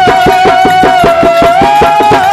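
Telugu devotional bhajan: a man's voice holding one long, high sung note that lifts slightly near the end, over fast, even hand-drum strokes.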